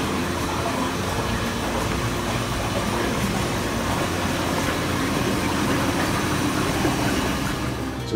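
HM 160 experimental flume running: its circulation pump hums steadily under the noise of water flowing through the glass-walled channel.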